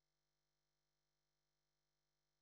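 Near silence: digital silence on a paused meeting recording.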